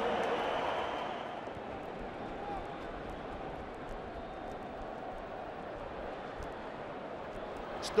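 Stadium crowd noise after a try: the cheering dies down over about the first second and settles into a steady crowd hubbub.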